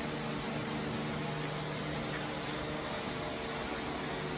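Steady hum of a running fan, with an even airy rush that does not change.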